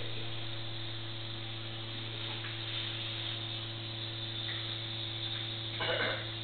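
A low, steady electrical hum with a constant hiss, and a short burst of noise just before the end.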